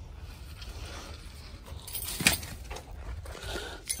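Footsteps and handling noise on sandy, gravelly ground over a low steady rumble, with one sharp click a little past halfway.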